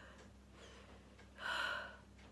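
A woman's sharp intake of breath while crying, once, about a second and a half in.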